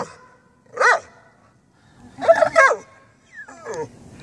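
A dog barking on command: one short bark about a second in, two or three more around two and a half seconds, then a falling yelp near the end.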